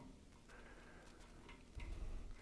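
Faint metallic ticking of an Allen key turning a screw with a star washer into a steel desk cross support: a few light clicks, the loudest near the end.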